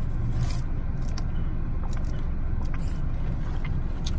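Steady low rumble inside a car cabin, with a few faint short rustles and clicks over it.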